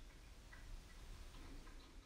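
Near silence: faint room tone with a few soft, irregular ticks.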